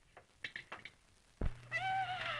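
A cat meowing near the end, a high call that bends down in pitch, preceded by a dull thump and a few faint knocks.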